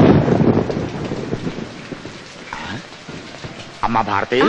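A thunderclap rumbling away and fading over the first second or so, then heavy rain falling steadily.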